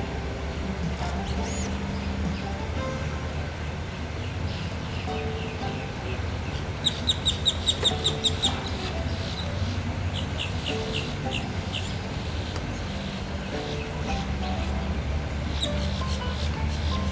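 A bird chirping: a quick run of about nine short, high chirps about seven seconds in, then a slower run of down-slurred chirps a couple of seconds later, over a steady low outdoor rumble.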